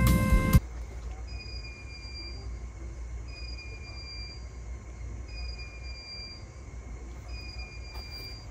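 Background music cuts off about half a second in, leaving quiet indoor room sound: a steady low hum with a faint high beep, under a second long, repeating about every two seconds.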